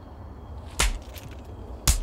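Two sharp slaps to the face, about a second apart.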